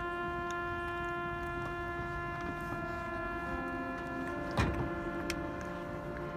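Marching band music in a long held chord, several steady notes sustained without change. A single short knock sounds a little past halfway.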